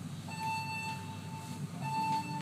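Two held electronic tones from the elevator car's sound system over a low steady hum. The first lasts about a second and the second starts near the end. They open the music that plays as the lift starts to climb.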